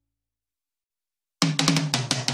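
Silence, then background music cuts in about a second and a half in with a burst of sharp drum-kit hits.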